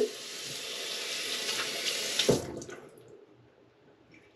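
Water running steadily from a bathroom sink tap, shut off with a knock about two and a half seconds in.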